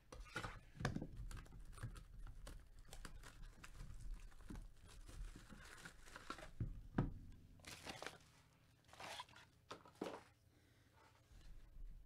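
A trading-card hobby box and its packaging being torn open and handled by gloved hands: irregular tearing, crinkling and scraping with a number of sharp clicks and knocks, the loudest about seven seconds in.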